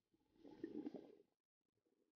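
Near silence, with one faint, muffled sound lasting about a second.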